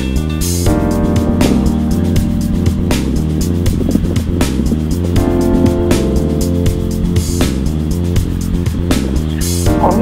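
Background music with a steady beat, laid over the steady drone of a light aircraft's piston engine heard inside the cabin.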